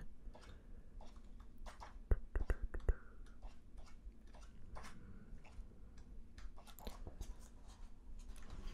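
Pages of a paperback comic-book collection being riffled quickly by hand: a run of crisp paper flicks and flutters, loudest in a quick burst about two seconds in, then lighter page flicks.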